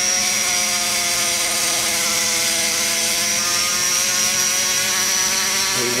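Die grinder running at steady speed with a sanding cone, polishing the inside of an LS cylinder head's cast-aluminium exhaust port: a steady high whine over a constant hum.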